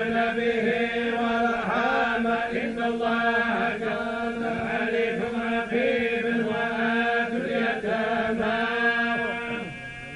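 A group of men chanting the Quran together in the collective tolba style of recitation, holding long drawn-out notes. The phrase dies away near the end.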